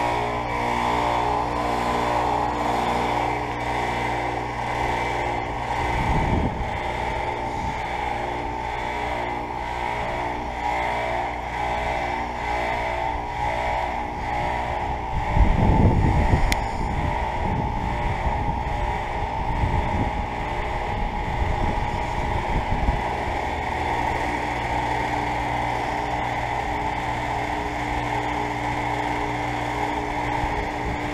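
Payne heat pump outdoor unit in its defrost cycle: the compressor runs with a steady hum while the condenser fan stands stopped. A brief, louder low rumble comes about sixteen seconds in, with a smaller one about six seconds in.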